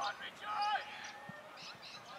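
Distant shouted calls from players on an Australian rules football ground, the loudest a drawn-out falling shout about half a second in, with a short dull thud about a second later.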